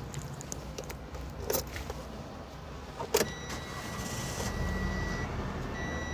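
Key clicks in the ignition of a 2019 Toyota Wigo 1.2 automatic, then a sharp click as the key turns. A steady electronic beep sounds for about two seconds, and the 1.2-litre petrol engine starts and settles into a smooth, quiet idle.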